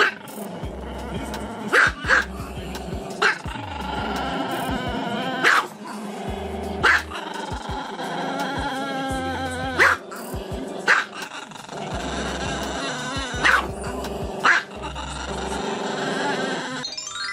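A Chihuahua giving short, sharp barks, about nine in all and several in pairs, over steady background music.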